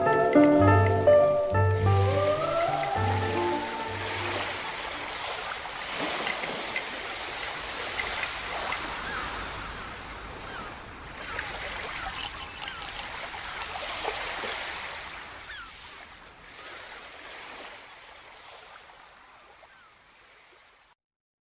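Lounge music from a radio jingle ends in the first few seconds, with a falling glide and a few last bass pulses. It gives way to a wash of running water with small gurgles that slowly fades away.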